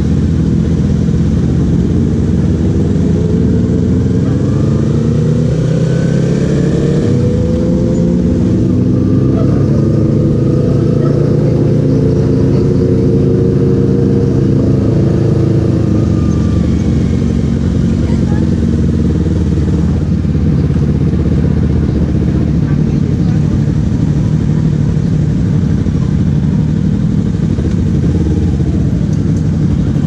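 Yamaha R15 V3's single-cylinder engine heard from the rider's seat at low speed, its note climbing and dropping several times with throttle and gear changes, then running steadier for the last ten seconds or so.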